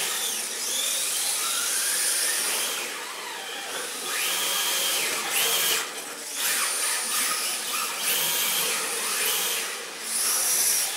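Electric motors of 1/10 scale RC drift cars whining, the pitch climbing, holding and dropping again several times with the throttle, over a steady hiss of the cars sliding on polished concrete.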